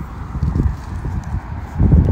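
Irregular scuffing and crunching footsteps on wood-chip mulch, with a steady hiss behind them.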